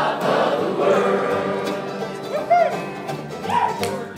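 Bluegrass band playing unplugged acoustic guitar, upright bass and fiddle, with many voices singing together. A short yelp rising and falling in pitch cuts through about two and a half seconds in.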